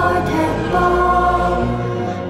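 A children's choir singing a pop song over instrumental backing with a steady bass line, holding long notes.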